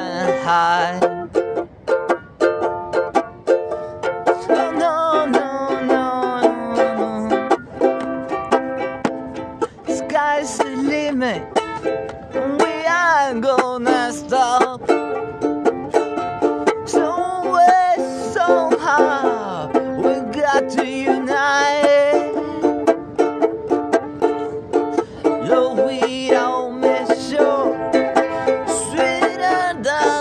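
A man singing a reggae song while strumming chords on a small four-string banjo.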